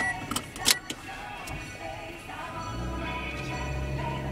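Car interior while driving: engine and road noise, with a few sharp clicks in the first second and a steady low engine hum that strengthens about three seconds in, under faint music.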